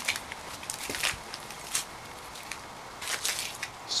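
Light footsteps: a handful of soft, scattered clicks and crackles, with a small cluster about three seconds in.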